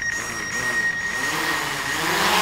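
Quadcopter drone's motors and propellers spinning up on the ground just before lift-off: a steady whirring with a thin high whine, starting suddenly.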